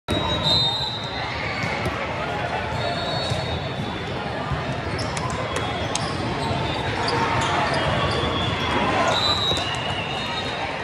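Busy, echoing volleyball hall: a crowd of voices, with a volleyball bounced on the court floor and several sharp ball hits scattered through, a cluster of them a little past halfway. A few short high-pitched squeals near the start and near the end.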